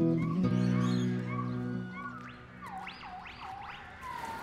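Background music fading out over the first two seconds, with a few faint chirps over it. Then a gibbon singing: a quick run of four rising whooping calls, quieter than the music.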